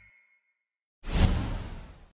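The last of the background music fades out, then after a short silence a whoosh sound effect swells up suddenly about a second in and dies away.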